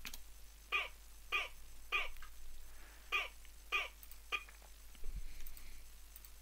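Short chopped vocal samples playing back from a music production session as the offbeat layer of a glitch hop track: six brief voice-like blips about 0.6 s apart, in two groups of three with a short pause between.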